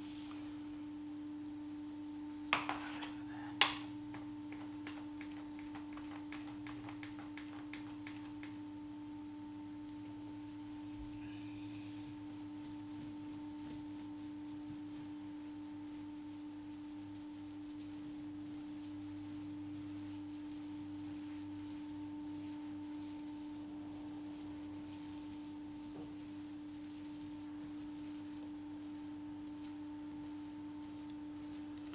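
A steady one-pitched hum throughout, with two sharp clicks about three seconds in and faint scratchy strokes of a paintbrush on the boat's cabin top.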